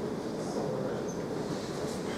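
Steady, even room noise through the presenter's microphone: a low hum with nothing else standing out.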